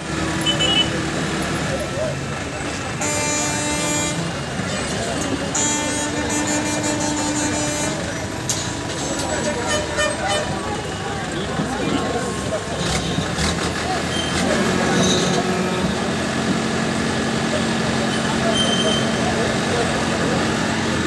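Backhoe loader's diesel engine running, its pitch shifting in steps, while men talk and call out. Now and then metal knocks and clanks as goods are handled.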